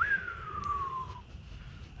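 A single whistled note, rising for an instant and then sliding down in pitch for about a second before stopping: an admiring whistle at a big fish.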